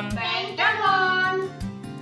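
A young girl's voice in a sing-song tone, repeating a shape name, over background music with held low notes and a steady beat.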